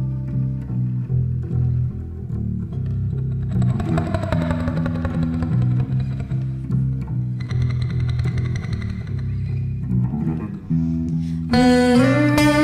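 Acoustic guitar and a Rickenbacker electric bass playing an instrumental passage of a song, the bass notes moving in a steady rhythm under the guitar. Near the end a female voice comes in singing.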